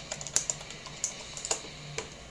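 Computer keyboard keystrokes: a few separate, irregularly spaced key clicks as a command is typed and entered.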